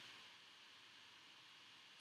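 Near silence: faint steady room tone or microphone hiss.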